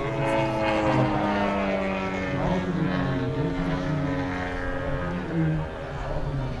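Engine of a radio-controlled model aircraft flying overhead: a steady drone whose pitch falls slowly as it goes.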